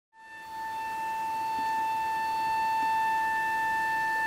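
Symphony orchestra holding a single high note, steady in pitch, swelling in over the first second and then sustained.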